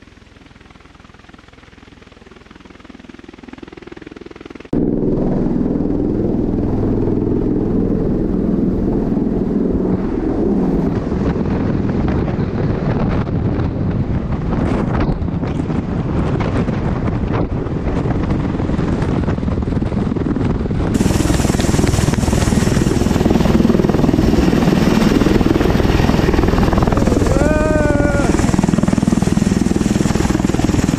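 MV-22B Osprey tiltrotor hovering, its rotor noise building slowly over the first few seconds. About five seconds in it jumps to a loud, dense rush of rotor downwash buffeting a close microphone. A brief shout comes near the end.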